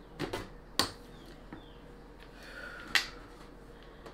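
Plastic sticks of a Boom Boom Balloon game being pushed down notch by notch into the balloon frame: a few separate sharp clicks spread over several seconds.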